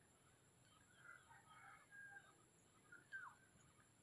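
Near silence with faint bird calls: scattered short chirps, and one louder falling call a little after three seconds in.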